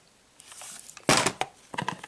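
Crinkling and rustling of shrink-wrapped cassette tapes being handled, loudest in a sharp crackle about a second in, followed by a few small clicks.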